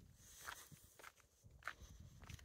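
Faint footsteps of a person walking on dry ground, a few steps spaced about half a second to a second apart.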